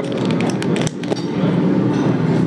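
Clear plastic lid being pried off a plastic dessert cup, crinkling and clicking in a quick run through the first second.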